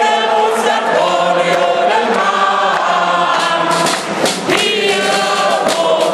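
Men and women singing a Cologne carnival song together in chorus, loud and sustained.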